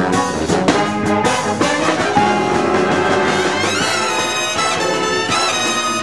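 A jazz big band playing: drum kit hits punctuate the horn chords for the first two seconds, then the brass and saxophone section holds sustained chords with sliding pitch bends.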